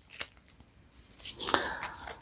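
Folded paper being creased and handled between the fingers: a single light tick about a quarter second in, then soft paper rustling and crackling from just over a second in.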